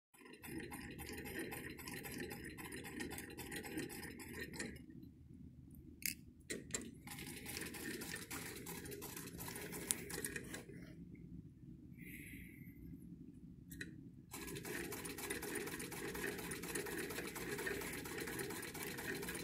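Hand-cranked 1940s Singer 15-91 sewing machine, converted to a 15-88/89, stitching through cotton quilt squares with a quick, even mechanical clatter of needle and works. It stops and starts again twice, briefly about five seconds in and for a few seconds past the middle.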